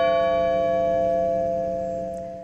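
A large memorial bell, struck once just before, rings on with a rich, many-toned hum that slowly fades away.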